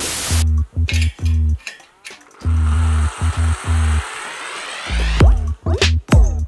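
Background music with a heavy, repeating bass beat, opening with a short burst of noise and building through a rising sweep before the beat drops back in near the end.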